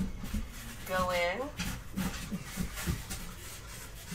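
Fountain pen nib scratching short, quick marks on painted paper, a few faint irregular scratches and taps.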